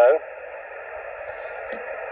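Yaesu FT-817 transceiver's receiver hiss through its speaker, a steady band-limited noise with no station on the frequency, as the open channel sounds between overs of a 2 m contact. A faint click comes near the end.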